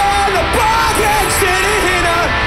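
A punk rock band playing live at full volume: distorted electric guitars, bass and drums, with yelled vocals over them.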